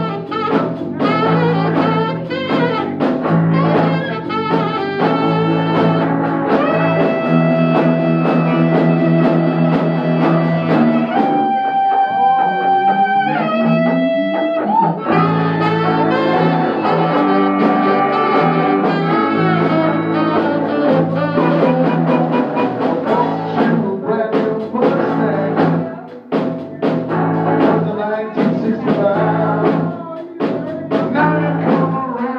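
Live band playing an instrumental passage on electric guitar, bass guitar and drums. Midway the drum hits stop for a few seconds while held notes ring out, then the full band comes back in.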